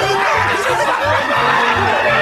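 A person laughing and snickering over background music with a steady low beat.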